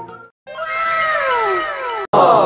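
Background music cuts off, and after a brief silence an edited-in comic sound effect plays: one long cry sliding steadily down in pitch for about a second and a half.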